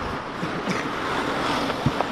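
Steady rushing of wind and handling noise on a handheld camera's microphone, with one short thump near the end.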